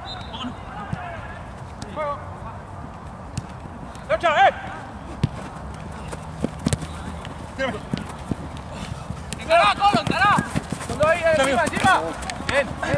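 Footballers shouting short calls to each other during play, the loudest bursts about four seconds in and again near the end, with a few sharp knocks scattered through.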